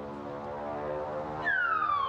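A comic falling-bomb whistle sound effect: a whistle that starts about one and a half seconds in and slides steadily down in pitch, over a steady pitched drone that grows louder.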